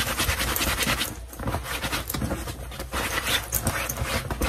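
A cloth rubbed quickly back and forth over the synthetic fabric of a vest to scrub a stain out: a rapid, uneven run of scratchy rustling strokes.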